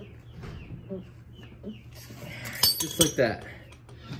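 Steel hand tools clinking on metal and concrete: a few sharp clanks with a bright ringing, about two and a half to three seconds in, as a wrench is worked and set down.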